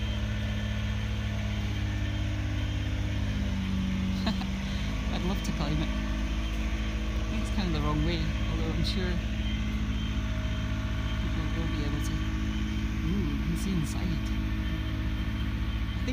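Steady low hum of a running engine from site machinery, with voices talking in the background at times.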